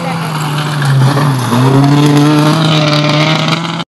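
Rally car engine running at high revs as the car comes down a gravel stage, getting louder as it nears; the revs dip briefly about a second and a half in and climb again. The sound cuts off abruptly just before the end.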